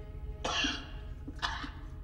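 A man coughing and hacking harshly, with two rough coughs about half a second and a second and a half in, over a low musical drone.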